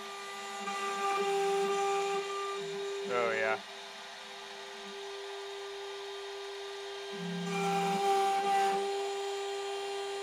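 Desktop CNC router's spindle whining steadily while its single-flute end mill cuts plywood in two louder stretches, near the start and again about seven seconds in. A short rising machine whine comes about three seconds in.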